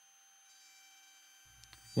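Near silence: faint room tone with a thin steady hum.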